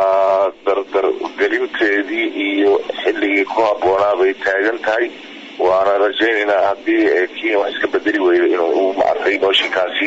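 Speech only: a single voice narrating a news report, with nothing else to be heard.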